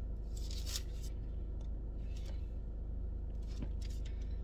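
Steady low hum in a car cabin, with a short rustling scrape of handling about half a second in and a few faint clicks later.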